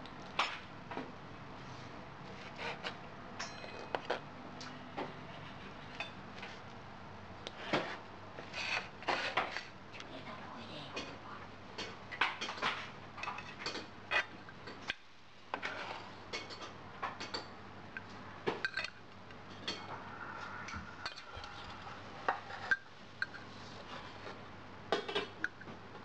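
Kitchen knife and fork clicking and tapping against a plastic cutting board and a ceramic plate as braised pork ear is sliced and served, in irregular taps throughout.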